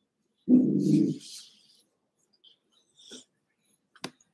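A cavoodle gives a short, low growl about half a second in while a knot in its coat is being teased out with a dematting tool.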